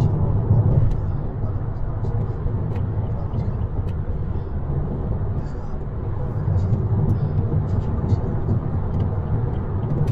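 Steady low road and engine rumble of a car at highway speed, heard from inside the cabin, with a few faint ticks.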